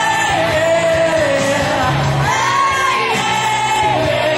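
Karaoke singing: a solo voice holds long, gliding notes over a recorded backing track.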